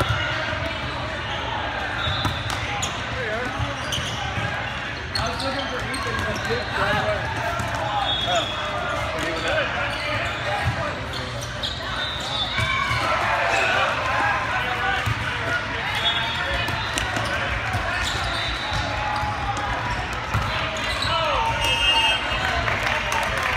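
Busy sports-hall din from volleyball play: a constant babble of players' and spectators' voices with shouts, and sharp slaps of a volleyball being served, passed and hit, echoing in a large hall. The noise rises with shouting about halfway through, and a few short high-pitched tones sound across the hall.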